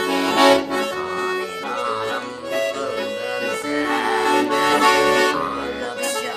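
Bayan (chromatic button accordion) playing a melody over sustained chords, the held notes changing every second or so.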